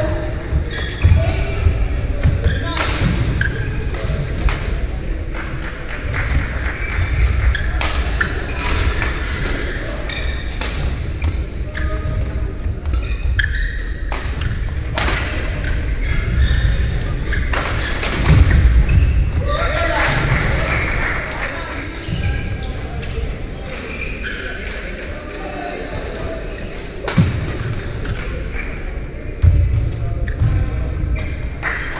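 Badminton rally on an indoor court: sharp racket strikes on the shuttlecock come at irregular intervals over the players' footfalls thudding on the court, with a heavier thud about 18 seconds in. Background voices chatter in the hall throughout.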